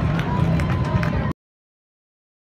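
Racetrack ambience: a public-address announcer's voice over a steady low rumble, cut off abruptly a little over a second in, then total silence.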